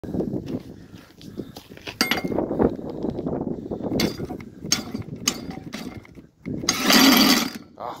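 Cordless drill with a socket being fitted onto a push mower engine's flywheel nut: clinks and knocks of metal on metal, then about seven seconds in a short loud burst as the drill spins the engine over to start it.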